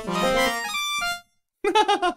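A female lead vocal in a symphonic progressive-metal song, held notes stepping from one pitch to the next over the band, cut off abruptly just after a second in. After a short gap another brief snatch starts near the end, with a man laughing.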